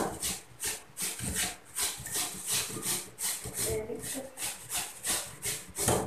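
Raw potato being rubbed on a hand grater: quick, regular rasping strokes, roughly three a second.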